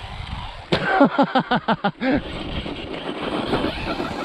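A 1/10-scale electric RC truggy coming down nose-first from a jump with a sharp thump a little under a second in, followed by a burst of laughter. After that comes a steady hiss of the truck's electric motor and tyres running on dry dirt.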